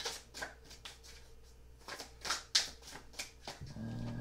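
Tarot deck being shuffled by hand: a run of short card flicks and riffles.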